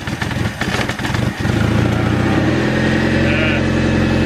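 Honda Civic's carburetted four-cylinder engine running roughly, then catching about a second and a half in and settling into a steady idle, fed by its mechanical fuel pump from a temporary fuel bottle.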